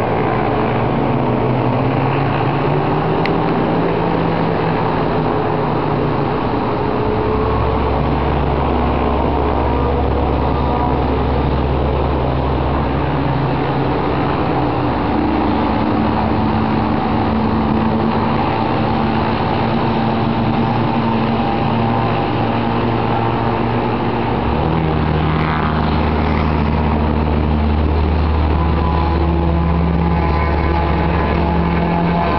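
Light propeller aircraft piston engines running as the planes taxi, a steady drone whose pitch shifts in steps several times as the throttle changes.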